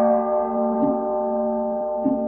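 A Buddhist bell, struck just before, ringing on with a long, steady, slowly fading tone between chanted verses. Two soft knocks fall over it, a little over a second apart.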